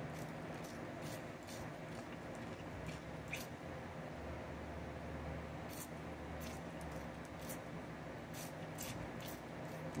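A dog licking and lapping water from a spray bottle's nozzle: faint, wet clicks and squishes of the tongue at irregular intervals.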